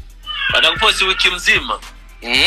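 A person's voice, wordless and high-pitched, wavering up and down, over background music.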